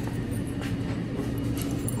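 A steady low mechanical hum and rumble over constant background noise, with a few faint clicks.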